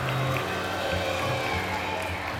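Amateur rock band playing live through amplifiers: electric guitars, bass and drum kit, with a voice on the microphone.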